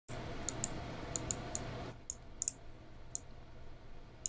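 Computer mouse clicks, about a dozen scattered irregularly, over a steady hiss and low electrical hum from the recording setup. The hiss is louder for about the first two seconds, then drops.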